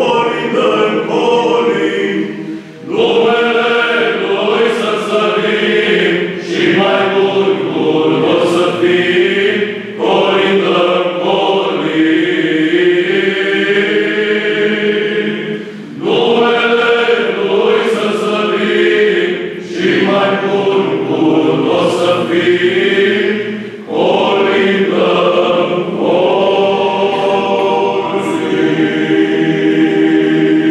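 Byzantine psaltic choir of men's voices singing a Romanian Christmas carol (colind) unaccompanied, in long phrases with brief dips between them near the start, around the middle and about two-thirds through.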